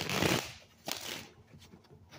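A tarot deck being shuffled by hand: two short bursts of card shuffling, one at the start and a shorter one about a second in.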